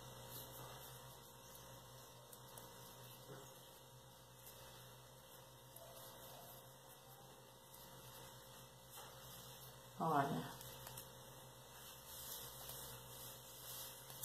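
Quiet room with a steady low electrical hum; a brief murmur of a woman's voice about ten seconds in.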